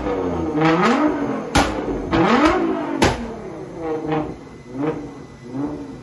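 Nissan GT-R's twin-turbo V6 free-revving in repeated throttle blips, with loud exhaust bangs at about a second and a half and three seconds in as the flame tune fires flames out of the tailpipes. The later blips are shorter and quieter.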